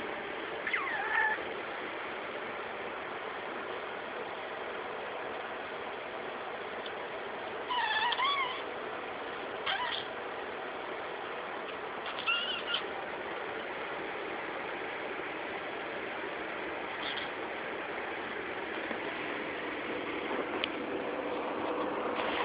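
Budgie giving a handful of short, wavering chirps spread out over steady background hiss, the longest and loudest about eight seconds in.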